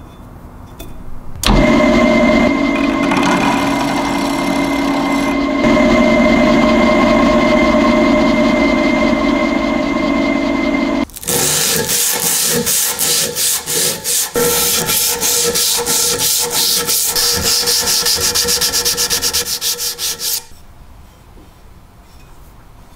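A power tool runs steadily for about nine seconds on a cast-iron slicer frame, then fast scraping hand strokes work the frame held in a vise, about four strokes a second, stopping suddenly near the end.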